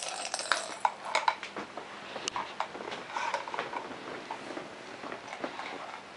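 Plastic toy spoons clicking and scraping against small plastic toy bowls and cups while being stirred, in irregular light taps.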